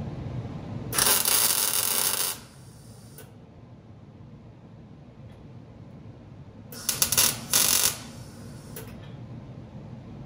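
MIG welder tack-welding a sheet-steel fender panel onto a steel wire-form buck. There is a crackling burst of about a second and a half about a second in, then two shorter bursts around seven seconds in and a brief one near nine seconds.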